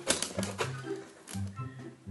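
Handheld stapler snapping staples through corrugated cardboard: a few sharp clicks near the start, with fainter clicks later, over background music.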